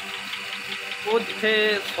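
A steady mechanical hum with several constant tones runs beneath a man's voice. Speech pauses for about the first second and then resumes.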